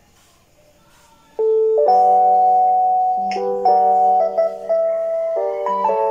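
Quiet for about a second and a half, then gentle drama background music with held keyboard-like notes, the chord changing every second or so.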